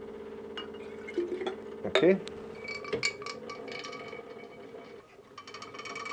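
Glassware clinking twice, sharp and brief, over a steady low hum.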